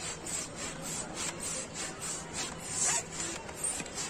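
Hand-held balloon pump worked in quick strokes, each push a short hiss of air, about three a second, as a balloon fills on its nozzle.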